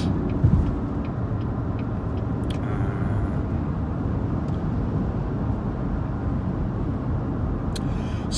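Steady low rumble of a car heard from inside its cabin, with a single thump about half a second in.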